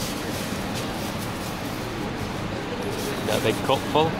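Steady background chatter and bustle of a busy indoor market hall, with a voice speaking briefly near the end.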